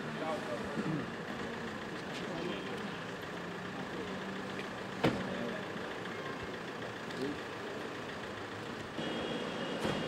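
Outdoor street ambience with traffic noise and faint voices in the background, broken by one sharp click about five seconds in.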